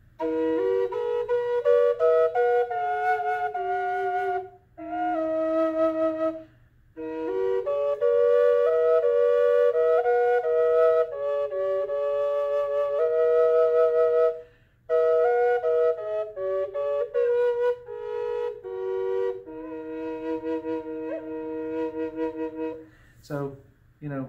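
Native American fifth drone flute, a double flute with a low E melody chamber and a high B drone chamber a perfect fifth apart, being played: a steady drone note held under a slow melody that moves above and below it. It comes in several phrases separated by short breath pauses and stops about a second before the end.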